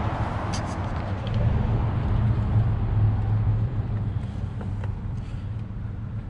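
Low, steady rumble of motor traffic, like a vehicle running on a nearby road. It swells about two to three seconds in and then eases off.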